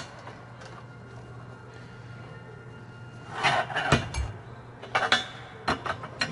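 Steel tool parts clinking against each other, with one sharp knock past the middle and more clinks near the end, as the nut that closes the dowel puller's collet onto the dowel is being tightened. A steady low hum runs underneath.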